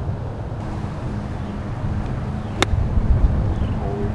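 Wind rumbling on the microphone, then a single sharp click about two and a half seconds in: a golf club striking the ball. A faint steady hum runs underneath.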